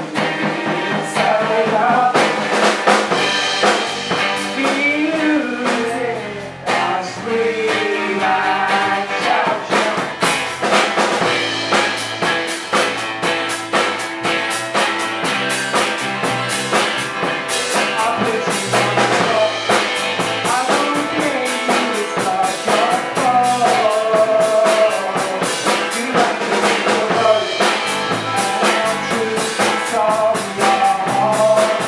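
A small rock band playing live: strummed acoustic guitar, electric bass and a drum kit, with a male lead vocal. The drums fill out into a steady, busier beat about ten seconds in.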